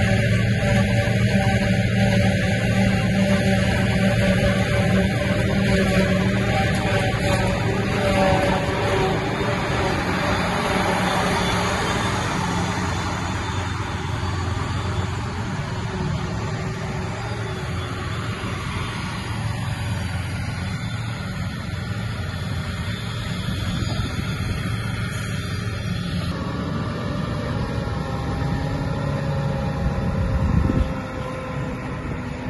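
Diesel engines of a Claas self-propelled forage harvester and a New Holland tractor running steadily during grass silage harvesting, a continuous low hum. The sound changes abruptly a few seconds before the end.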